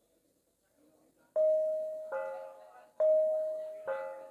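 Javanese gamelan: four struck bronze notes, each ringing and fading, about a second apart and alternating between two pitches, after a near-quiet first second.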